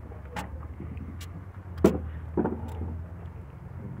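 Knife on a plastic cutting board while filleting fish: a few sharp knocks and clicks, the loudest about two seconds in, over a low steady rumble.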